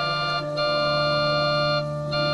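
Electronic keyboard on an organ voice playing slow sustained chords over a held bass note. The chord changes about half a second in and again near the end.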